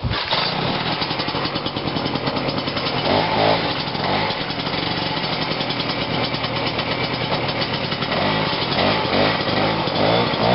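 Single-cylinder Rotax 320 two-stroke engine of a 1969 Ski-Doo Olympic snowmobile running, with a rapid, even firing beat. The pitch rises and falls briefly about three seconds in and again near the end as the throttle is worked.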